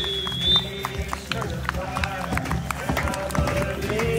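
Referee's whistle blown long for full time, its high, slightly wavering tone ending about half a second in; then voices and scattered handclaps from the pitch.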